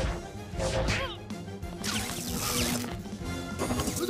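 Action film soundtrack: the score plays under fight sound effects, with a burst of crashing noise about two seconds in.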